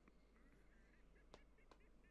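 Near silence: faint room tone with a few faint short high squeaks and two small clicks just past halfway.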